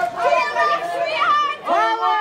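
Several photographers' voices calling out over one another at once, in raised, high-pitched shouts.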